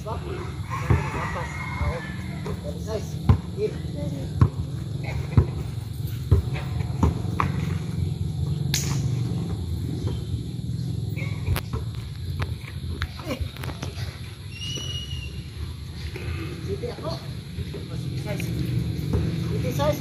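Basketball game on grass: scattered sharp knocks and thuds as the ball strikes the backboard and rim and lands on the ground, every second or two, over a steady low rumble.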